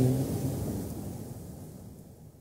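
The tail of a man's amplified voice in a large auditorium dies away at the very start. Faint, low room noise follows and fades steadily to silence.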